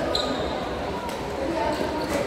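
Badminton rackets striking a shuttlecock in a rally, a couple of sharp pops, with a brief high squeak near the start. Indistinct chatter echoes in a large hall underneath.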